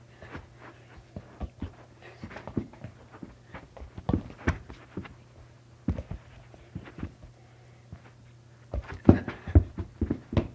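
Soccer ball being kicked and juggled on a carpeted floor: irregular soft thumps of foot-on-ball touches and footfalls, with a quick run of louder thumps near the end.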